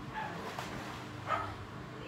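A dog barking a few short times, the loudest bark just past the middle.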